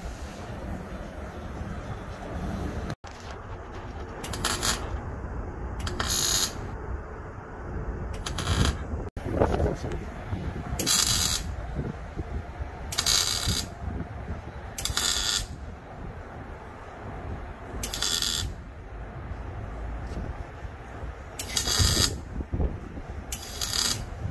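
Arc welding in short bursts, about nine in all, each under a second of hissing crackle. The weld fixes a new threaded sensor fitting onto a truck's diesel oxidation catalyst housing, in place of a port whose thread is stripped. A low rumble runs underneath.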